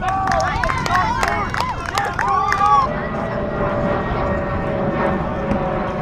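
Players' voices shouting and calling across the field, many short overlapping calls in the first three seconds. Then a steady drone with a slowly falling pitch takes over.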